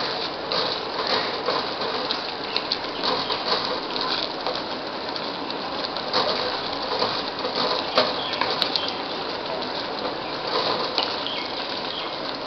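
Papaya halwa mixture of milk and ghee bubbling and spluttering in a kadai as it cooks down toward dryness, a steady sizzle with many small irregular pops.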